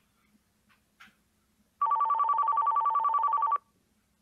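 Electronic landline telephone ringing once: a rapid two-tone warbling trill lasting just under two seconds, starting about two seconds in.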